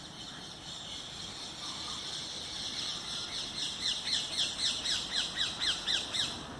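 A bird calling outdoors: a steady high note, then a fast series of short, falling high notes, about five a second, growing louder through the second half.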